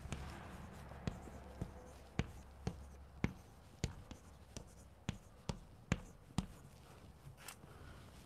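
Chalk on a blackboard, making short, quick hatch strokes: about fifteen sharp taps and scrapes spread irregularly, fairly faint.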